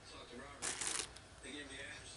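A person sniffing hand lotion: one noisy inhale through the nose about half a second in.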